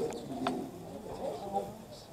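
Soft, low voice speaking in a room, quieter than the talk around it, with one brief click about half a second in.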